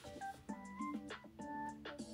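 Quiet background music: a simple electronic melody of short, pure beeping notes that change pitch several times a second over a low held tone, with light percussive clicks.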